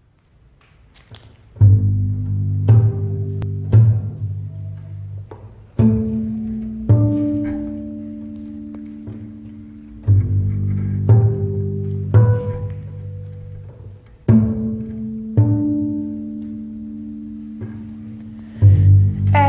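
Slow jazz instrumental intro on double bass and cello, with notes plucked in groups of three about a second apart and sustained tones ringing above them. The music fades up from quiet, and the first strong note comes about a second and a half in.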